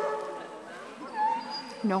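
Border collie whining while held in a sit-stay at the start line: a held, pitched whine at first, then a short high rising-and-falling whimper about a second in.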